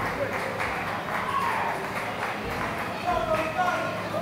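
Assault AirBike fan whooshing steadily as it is pedalled hard in a sprint, with voices shouting in the background.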